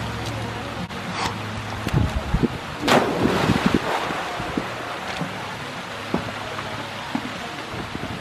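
A person jumping into a swimming pool, attempting a flip that doesn't rotate all the way around: a few knocks on the wet deck, then a loud splash about three seconds in and the water churning after it, over the steady rush of the pool's spray fountain.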